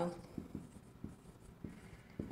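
Marker writing on a whiteboard: about five short, separate strokes as a word is written.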